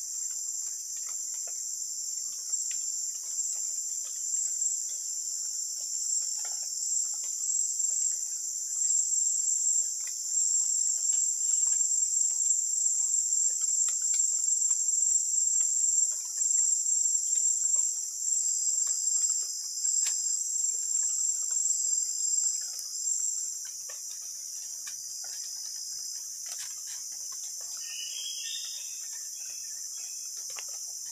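A loud, high-pitched insect chorus trilling steadily in tropical rainforest. The loudest trill cuts out about 23 seconds in, leaving a quieter, steady chorus. Faint scattered ticks and rustles sit underneath.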